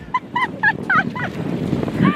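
A woman laughing hard in short, high-pitched bursts, about four a second, over the steady rushing noise of sleds sliding over packed snow.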